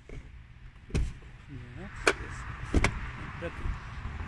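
Knocks and clunks from the rear seat fittings of a car being handled by hand: three sharp knocks, about a second in, about two seconds in and, loudest, near three seconds in, with a brief mutter between them.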